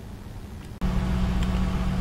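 Car engine idling steadily at about 950 rpm, just started from cold, heard from inside the cabin. It comes in suddenly about a second in, after a quiet stretch with no cranking heard.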